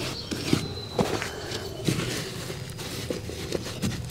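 Hands squeezing and rubbing tape onto a corrugated plastic drain pipe joint, making irregular soft taps, crinkles and rustles.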